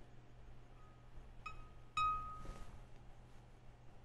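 Three light ceramic clinks ringing at the same pitch, the last the loudest and longest, followed by a short swish: a brush tapped against a porcelain water pot or dish while ink painting.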